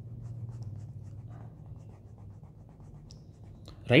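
Stylus drawing on a tablet screen: a string of quick, light scratches and taps as lines are sketched, over a low steady hum.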